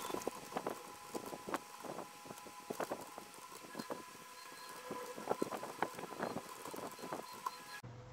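Computer keyboard being typed on: quick, irregular key clicks with a short lull near the middle.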